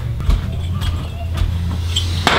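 A low steady hum with a few light clicks of glass tiles being set down on a hard surface.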